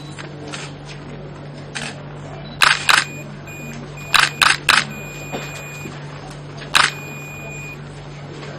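Camera shutter clicks, about six over several seconds, two close together near the start and three in quick succession in the middle, with a faint high steady beep sounding on and off between them.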